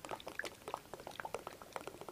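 A person drinking from a bottle: a quick run of gulps and liquid glugging, about seven or eight a second.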